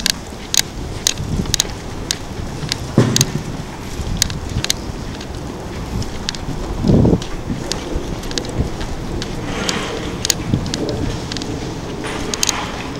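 Footsteps on a paved street, about two steps a second, over low rumbling wind noise on the microphone. There are a couple of louder low thumps, about a quarter of the way in and just past the middle.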